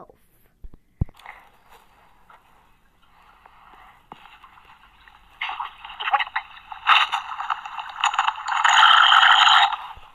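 Harsh, crackling noise of a video soundtrack sped up hundreds of times over. It is faint at first, turns loud about five and a half seconds in, is loudest near the end, then cuts off.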